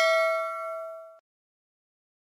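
Bell ding sound effect for a clicked notification-bell icon: one clear ringing note with higher overtones, fading away and cutting off a little over a second in.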